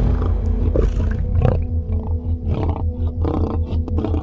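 Lion growling and roaring in a series of separate grunts, the strongest about a second and a half in, over background music with a deep steady bass.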